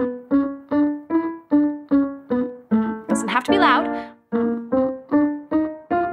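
Digital piano playing short, detached notes that step up and down a scale pattern, about three a second, with a short break about four seconds in, while a woman hums short creaky closed-mouth 'mm' notes on the same pitches as a staccato pitch-accuracy exercise.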